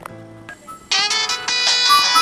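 Phone ringtone: a bright electronic melody of short, repeated notes starts loudly about a second in, over faint soft music.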